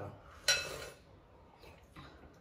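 A single clink of tableware about half a second in, with a short bright ring that fades quickly.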